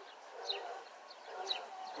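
Faint animal calls: short high bird chirps about half a second and a second and a half in, over dogs barking in the distance.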